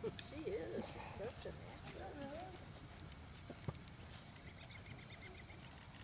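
Faint, distant talking, with one sharp click about three and a half seconds in.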